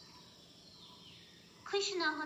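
A pause in speech with only faint room noise and a faint falling whistle-like sound in the middle, then a woman's voice starts speaking near the end.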